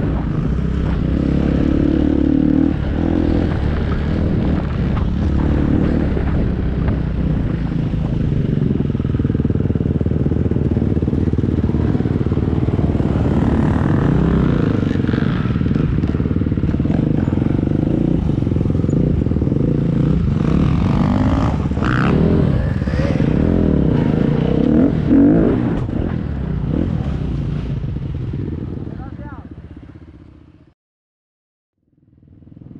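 Enduro dirt-bike engine running under the rider, heard from a helmet camera while riding over rough ground, its note rising and falling with the throttle. The sound fades out near the end.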